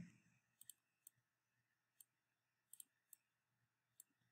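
Faint computer mouse clicks over near silence: about eight short, sharp clicks scattered through the pause, some in quick pairs.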